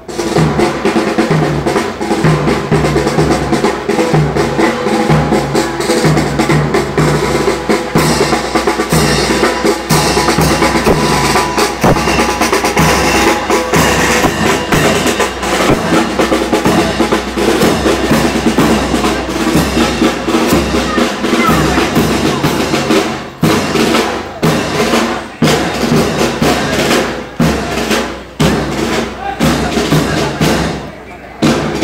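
A parade drum corps, snare drums and bass drum, playing a steady marching beat with snare rolls, over crowd voices. In the last several seconds the drumming comes in short bursts with brief gaps.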